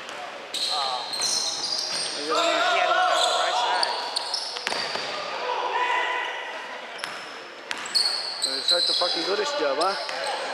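A basketball bounces on a hardwood gym floor, with short high-pitched sneaker squeaks as players run and cut, in a large echoing gym.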